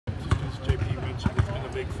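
Basketballs bouncing on the court, several irregular thuds a second.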